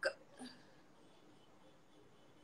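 Near silence on a live-chat audio line as a voice stops, broken once about half a second in by a brief, faint, short vocal sound.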